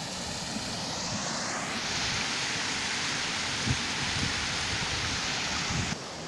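Canal water rushing through a concrete culvert: a steady rushing noise that swells about a second or two in. A few low bumps on the microphone, the clearest near the middle.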